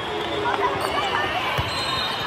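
A volleyball thumps once on the court floor about one and a half seconds in, over the steady chatter of players and spectators in a large hall.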